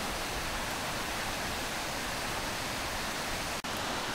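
River Bran's rapids and falls in a rocky gorge: a steady rush of white water, broken by a momentary dropout near the end.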